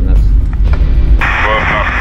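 Marine VHF radio: about a second in, the channel opens with a sudden burst of hiss and a thin, narrow-band voice starts coming through, the pilot station's reply. A steady low rumble runs underneath throughout.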